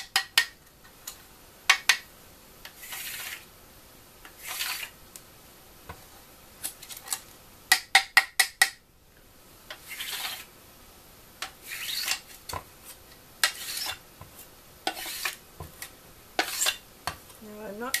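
Excess chocolate being cleared from a chocolate mould: short scraping strokes of a scraper across the mould, with sharp knocks of the mould being tapped between them, including a quick run of several knocks about eight seconds in.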